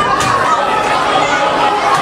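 Crowd chatter: many spectators' voices talking and calling out over one another, steady throughout.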